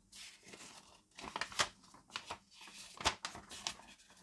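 A folded paper quick start guide being unfolded in gloved hands: irregular paper rustling and crinkling, with sharp crackles about one and a half seconds in and again about three seconds in.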